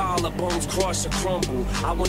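Bass-boosted trap music with rapped vocals over a steady deep bass line and regular crisp percussion hits.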